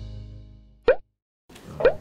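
Intro music fading out, then two short rising 'bloop' pop sound effects about a second apart, the kind of cartoon button-tap sounds that go with an animated like-button prompt.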